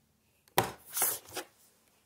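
A phone snatched off a wooden countertop: three sharp knocks and scrapes on the wood about half a second apart, the first the loudest.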